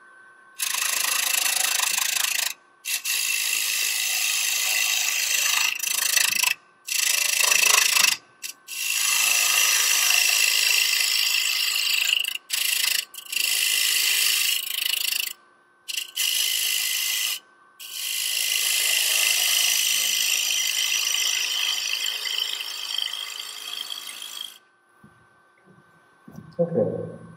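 A turning tool cutting across the face of a spinning wood blank on a lathe, facing it flat: a steady hissing shaving sound, broken by about ten brief gaps where the tool comes off the wood, and stopping about a second and a half before the end.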